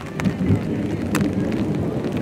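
Wind rumbling on the camera microphone, with two sharp knocks about a quarter second and a second in.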